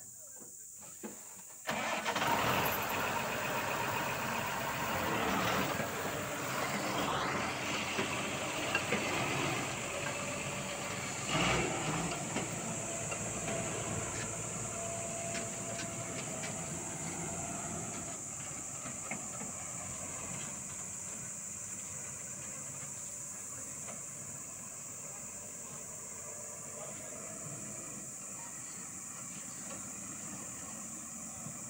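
Tractor-trailer truck's diesel engine starts about two seconds in, then runs as the rig pulls away, getting gradually fainter. There is a single clunk a little past ten seconds in.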